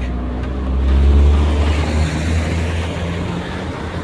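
A car driving past, its engine rumble swelling to loudest about a second in, then slowly fading as it moves away.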